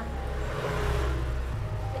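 A road vehicle passing close by on the street, its rumble and tyre noise swelling to a peak about a second in and then fading.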